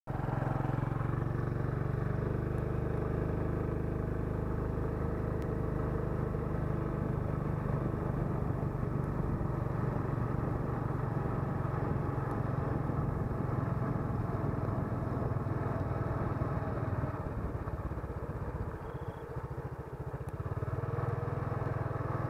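Motorcycle engine running steadily while riding, with wind and road noise. It eases off briefly a few seconds before the end, then picks up again.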